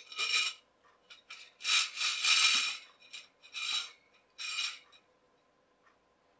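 Metal coil spring and thin metal pole scraping against the inside of a wider metal tube as they are pushed into it: four scraping rubs, the longest and loudest from about one and a half to three seconds in.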